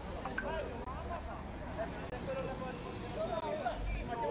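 Faint, distant voices calling out, over a steady low rumble.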